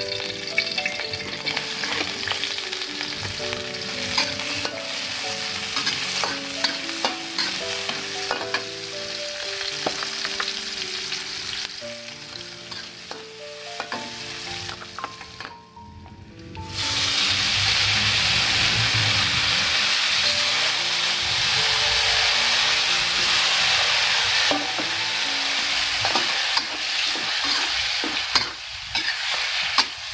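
Shallots, garlic and chilies sizzling in hot oil in a steel wok, with a metal spatula stirring and clicking against the pan. After a short break about 16 seconds in, the sizzling is louder and steadier.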